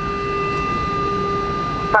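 Cabin noise inside a McDonnell Douglas MD-80 taxiing after landing: a steady low rumble with a steady whine from its rear-mounted Pratt & Whitney JT8D engines at idle.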